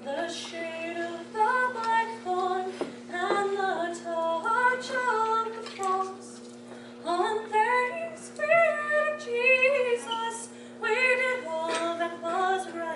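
A woman singing solo and unaccompanied, a cappella, in phrases with short breaks between them. A faint steady low hum runs beneath the voice.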